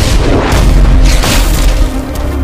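Film sound effects of cannon fire and explosions: a deep boom right at the start and a larger one about a second and a half in, over heavy low rumble.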